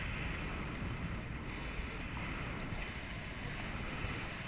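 Wind rushing over an action camera's microphone under a parasail: a steady rush with a low rumble and no distinct events.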